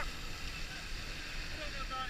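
Steady noise of sea surf breaking and washing over the shallows, with faint voices in the background near the end.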